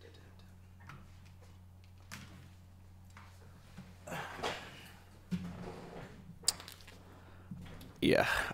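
A person moving about close to a desk microphone: a rustle, a low thump and a sharp click, faint over a steady low hum.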